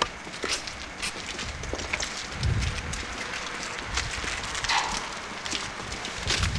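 Footsteps of several people walking across a courtyard: a string of irregular short steps and scuffs, with a low rumble on the microphone about halfway through.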